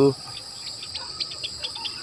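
Insects singing in the field: a steady high-pitched drone with short high chirps repeating a few times a second, coming quicker and louder toward the end.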